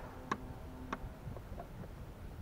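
Two light clicks about half a second apart, over a faint steady hum.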